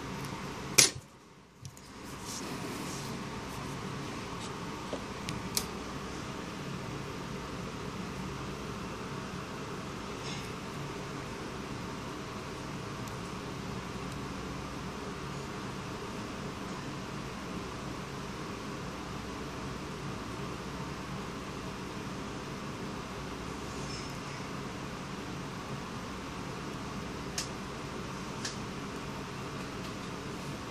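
Steady background hum like a small fan running, with one sharp click about a second in and a few faint ticks later.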